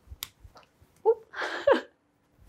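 A few soft taps of lemons and limes landing in the hands while juggling. In the second half comes a short laugh-like voice sound that falls in pitch.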